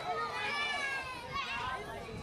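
Children's and spectators' voices shouting and calling out, high-pitched, with one long held shout about half a second in.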